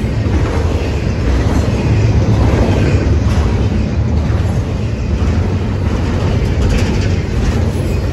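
Double-stack intermodal freight train rolling past close by: a steady rumble of steel wheels on the rails as the container well cars go by, with a few faint clicks.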